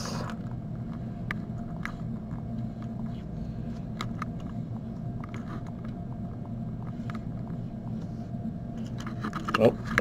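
Scattered light clicks of fingertip typing on a tablet's on-screen touch keyboard, over a steady low hum.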